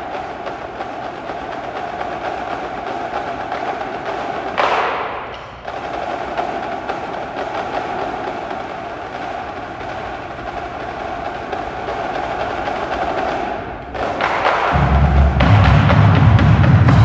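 Marching band drumline playing a fast, dense percussion passage of crisp rapid stick hits, with a brief swell about four and a half seconds in. After a short break near the end, a loud low-pitched bass part comes in, the loudest part of the passage.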